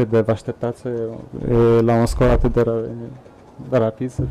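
Speech: a man talking in a room over a microphone, with some long drawn-out vowels.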